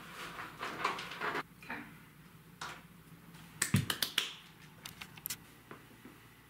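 A scattering of light clicks and knocks, with a louder knock and thump a little before four seconds in, followed by a quick cluster of sharp clicks.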